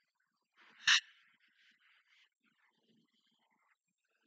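A single short, sharp burst of laughter from a person about a second in, followed by only faint sound.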